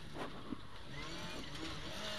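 Ford Escort RS2000 rally car's engine running under way, heard from inside the cabin over road noise, its pitch shifting a little.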